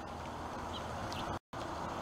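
Light rain hissing steadily, with a couple of faint high chirps; the sound cuts out completely for a split second about one and a half seconds in.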